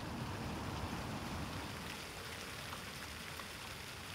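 Fountain water falling in thin streams and drops from an upper bowl and splashing into the basin below: a steady, even patter of splashing.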